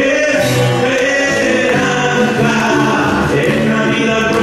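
A man singing a slow song live into a microphone, holding long bending notes, with musical accompaniment in a large hall.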